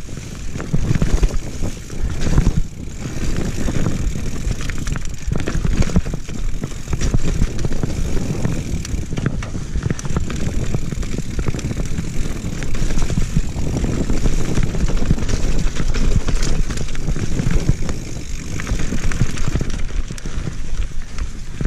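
Mountain bike descending a dirt forest trail: a continuous loud rumble of tyres on dirt and wind on the microphone, with constant clatter and rattle from the bike over roots and rocks.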